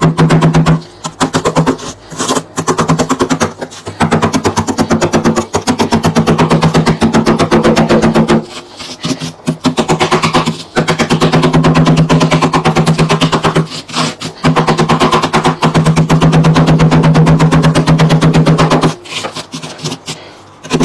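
Pink plastic scraper grating through thick frost inside a chest freezer, a loud, fast chattering rasp in long strokes. It breaks off briefly around eight and a half seconds in and again near the end.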